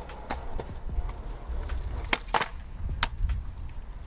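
Skateboard rolling on concrete, its wheels giving a steady low rumble, with a few sharp clacks of the board, the loudest two close together about two seconds in.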